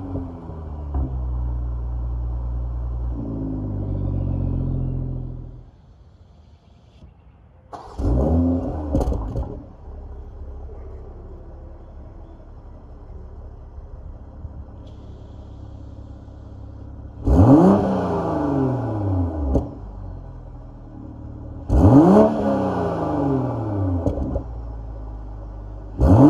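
BMW M340i's turbocharged 3.0-litre inline-six, stationary, revved on its exhaust: it settles from a rev to idle, then after a brief quiet gap gives three short throttle blips, about 8, 17 and 22 seconds in, each rising quickly and falling back to idle. For the later blips the engine is running a JB4 piggyback tune on Map 4.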